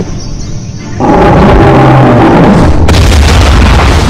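Cinematic sound effects over music: a sudden loud boom about a second in, followed by a sustained deep rumble.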